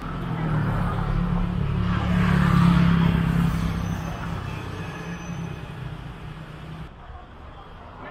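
A motor vehicle's engine running close by, a steady low hum that grows louder to a peak about two and a half seconds in, then fades away. Quieter street noise remains near the end.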